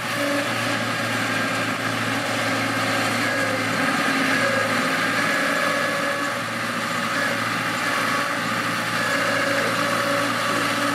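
Diesel engine of a small Mitsubishi crawler bulldozer running steadily as the blade pushes a pile of soil, with an even hum and only a slight dip in level partway through.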